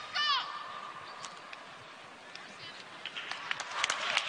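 A basketball dribbled on a hardwood court, with a few sneaker squeaks, over arena crowd noise that swells near the end.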